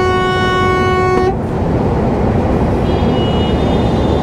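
Truck horn sounded in one steady blast of about a second and a half, heard from inside the cab over the engine and road drone. It is a warning honk at a car that pulled in ahead of the truck and braked.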